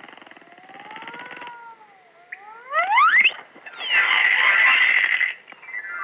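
Cartoon soundtrack sound effects: a buzzy rattle under a slow, wavering whistle-like glide, then fast rising whistle glides about three seconds in, and a loud jangling crash from about four to five seconds. Near the end, music starts a falling run of notes.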